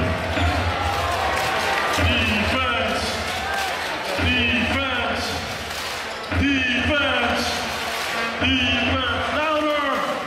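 Basketball arena crowd noise: many voices talking and calling out in a large hall, with the low thuds of a basketball bouncing on the court.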